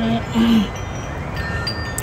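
Light ringing of chimes: several high tones that sound and fade at different moments over steady outdoor background noise, with a short hesitant "uh" from a speaker about half a second in.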